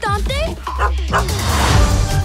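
Cartoon dog barking several short times over trailer music. The music swells about a second in.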